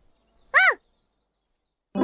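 A girl's voice making one short syllable about half a second in, its pitch rising then falling; music comes in right at the end.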